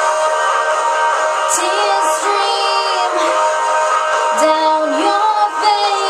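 A woman singing solo, her phrases coming in about a second and a half in and again past four seconds, over steady held accompaniment chords.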